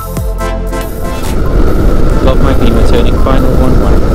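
Electronic dance music. About a second in it changes from a stepped, tuneful pattern to a louder, denser and noisier passage.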